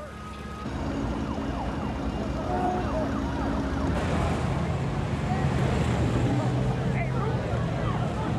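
Street noise of rioting and looting: many voices shouting and talking at once over vehicle engines and traffic, getting louder about a second in.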